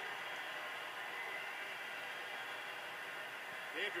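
Steady murmur of a hockey arena crowd from a TV broadcast, played through the television's speaker and picked up by a phone, which gives it a thin, hissy sound.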